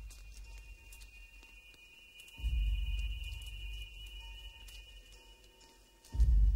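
Suspense film score: a sustained high synth tone over a deep low hit about two and a half seconds in that fades slowly.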